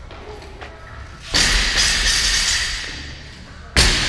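Loaded barbell with bumper plates dropped onto the rubber gym floor twice, about two and a half seconds apart, each a sudden heavy thud followed by the bar and plates ringing out for over a second.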